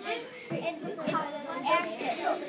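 Children's voices talking and chattering in a room.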